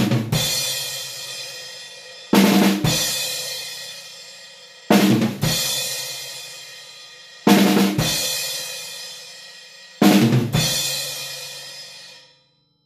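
Drum kit: short fills on the drums, each ending in a crash cymbal hit that rings out and fades, played five times about two and a half seconds apart. Two fills alternate.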